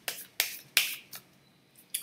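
A deck of reading cards handled and shuffled by hand: a handful of sharp card snaps, with one brief swish of cards sliding a little before the middle.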